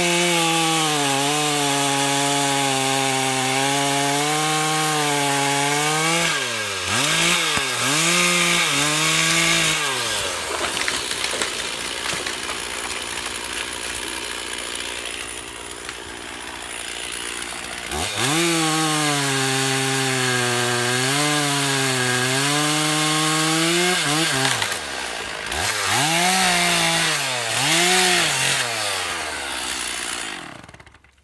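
Chainsaw cutting through a dead tan oak trunk: it runs at a steady full-throttle note for about six seconds, then is revved up and down several times. A quieter stretch with no clear engine note follows, then it cuts steadily again and ends with more throttle blips before dropping off.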